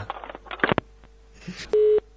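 Telephone busy tone on the line: a loud steady beep near the end, the sign that the other party has hung up. Before it come a few short clicks and scraps of voice over the phone line.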